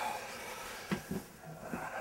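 Rustling with a few soft, low knocks from a person moving close to the microphone.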